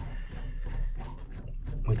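Faint, quick, irregular metal scraping and clicking from a cartridge puller being worked against a brass Moen 1225 shower-valve cartridge.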